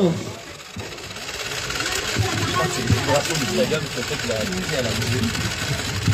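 Electric motor of a Beyblade Burst Speedstorm Motor Strike stadium spinning its central disc, now turning in the reverse direction. It builds up over about the first two seconds, then runs steadily under background voices.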